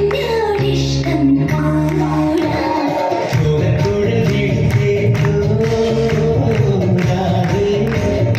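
Indian devotional song with singing over sustained low instrumental accompaniment. The low accompaniment drops out briefly about three seconds in, then resumes with a more rhythmic beat.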